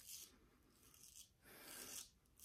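Faint scraping of an Economy Supply 800 straight razor cutting stubble through shaving lather on the neck, in short strokes. There is a brief stroke at the start, another about a second in, and a longer one in the second half.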